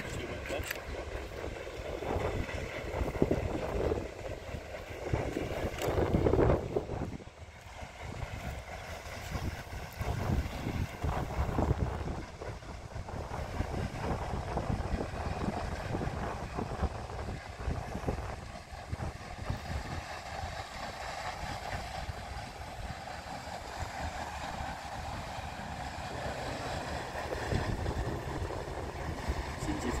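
Wind buffeting the microphone over the steady churning splash of a passing paddle steamer's paddle wheels, which grows a little stronger in the middle as the boat draws level.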